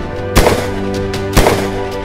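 Two sharp impact sound effects, about a second apart, each marking a hole punched through a card, over intro music with held notes.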